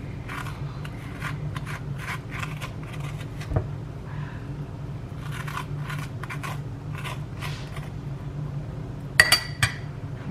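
Metal spoon scraping the inside of a halved acorn squash in a series of short strokes, over a steady low hum. About nine seconds in, a sharp metallic clink rings out as the spoon is set down.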